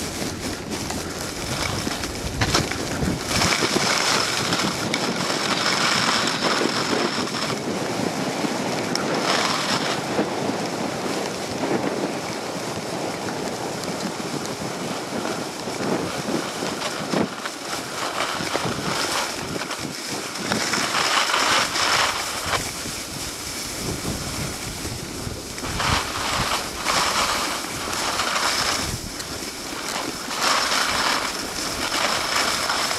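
Snowblades sliding and carving over packed snow, a rushing hiss that swells and fades with each turn, mixed with wind buffeting the microphone.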